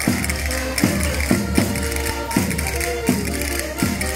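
Live band playing lively Portuguese folk-style dance music with a steady beat, regular drum strokes and bright tapping percussion.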